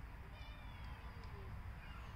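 Faint birds calling in short, high, falling whistled notes, heard over a low wind rumble on the microphone.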